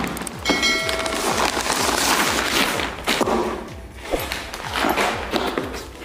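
Paper and cardboard packaging rustling and crackling as a box is pulled out of a paper sack and handled, with a few dull knocks.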